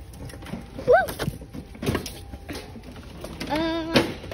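Short wordless voice sounds over shop background noise: a quick rising exclamation about a second in, and a held, wavering note near the end.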